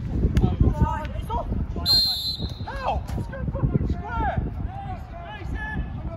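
Footballers shouting to each other during play, with wind rumbling on the microphone and a few sharp knocks of the ball being kicked.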